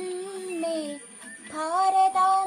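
A girl singing solo. She holds one long, slightly wavering note that fades about a second in, then starts a new phrase with a rising note about a second and a half in.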